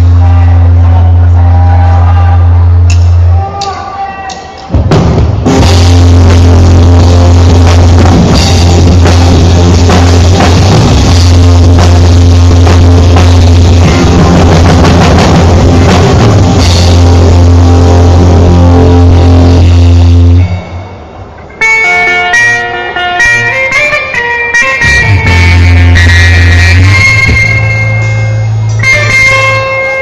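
Live rock band playing an instrumental passage: electric guitar, bass and drum kit, loud, with a heavy sustained bass. The music drops out briefly about four seconds in and again about twenty-one seconds in, and the last part is lighter, with melodic guitar lines.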